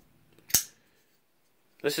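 A single sharp metallic snap about half a second in: a Rough Ryder RR1983 liner-lock flipper knife's blade flipped open and locking.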